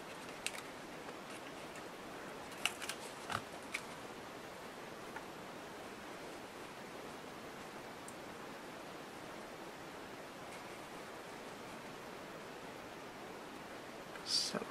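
Quiet handling of paper craft pieces: a few light clicks and rustles between about two and four seconds in, then only a faint steady hiss.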